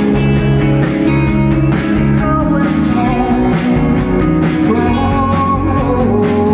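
Live band playing a pop-rock song through a stage PA: guitars and a held melody line over bass and drums keeping a regular beat.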